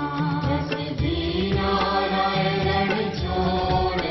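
Hindu aarti music: devotional mantra chanting with instrumental accompaniment, continuous and steady in level.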